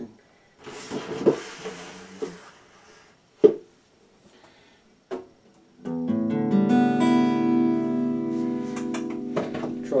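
Acoustic guitar handled with rustling and a couple of sharp knocks, then, about six seconds in, a chord strummed once and left to ring for several seconds.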